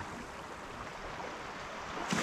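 Small waves lapping and washing over a sandy beach at the water's edge, a steady soft wash.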